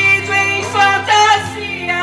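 A solo voice singing a Portuguese gospel praise hymn, the melody gliding between held notes over a sustained instrumental accompaniment.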